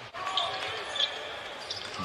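Court sounds of live basketball play: a ball dribbled on the hardwood floor, with a couple of brief high sneaker squeaks, over low arena background noise.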